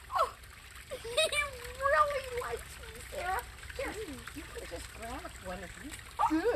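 Quiet, indistinct talking: soft voices with no clear words, over a steady faint background hiss.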